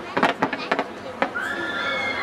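Fireworks going off: a few sharp cracks in the first second, then a shrill whistle of several tones at once, rising slightly, from about a second and a half in.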